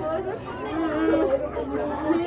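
Several people talking over one another, with some voices drawn out in long held tones.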